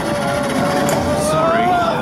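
On-ride audio of a motorbike roller coaster: a held note from the train's on-board speakers, rising slightly near the end, over a steady rumbling wash of ride noise.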